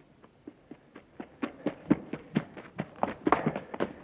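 Radio-drama sound effect of running footsteps, about four steps a second, fading in and growing louder as they approach.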